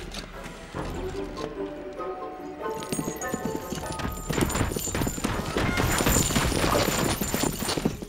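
Music score with held notes, then from about halfway a fast clatter of galloping horses' hooves over it, growing louder.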